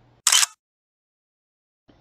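A single short burst of noise, about a quarter second long, a quarter second in, followed by complete silence for more than a second.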